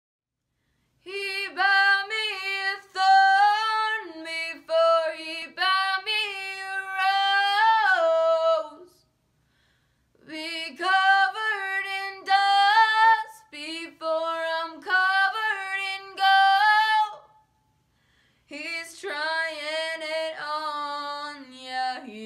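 A girl singing unaccompanied pop vocals, in three phrases with short pauses between.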